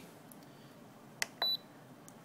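A sharp click, then a short high beep from a Spektrum DX6i transmitter as its selector roller is worked to leave the mix menu.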